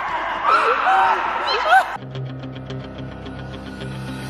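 Excited voices calling out with high, swooping pitch during a badminton game, then, about halfway through, background music with a steady beat cuts in abruptly.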